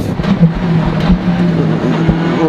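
Skoda World Rally Car's turbocharged engine running hard at steady revs, heard from inside the cockpit over road and wind noise.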